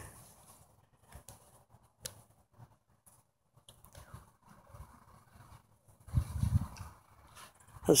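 Faint clicks and rustles of saddle tack being handled as the cinch strap is pulled through and tightened, with a short low rumble about six seconds in.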